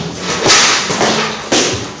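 Boxing-gloved punches landing on heavy punching bags: sharp slaps, the two loudest about a second apart, among strikes from other bags.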